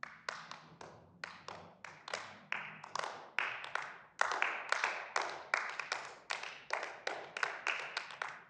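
A handful of people clapping: separate, uneven claps that stay distinct rather than blending into a roar, several a second.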